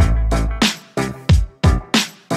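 Boom bap hip hop instrumental beat: punchy drum hits in a steady groove under a funky sampled loop, with a deep bass note held for about half a second at the start.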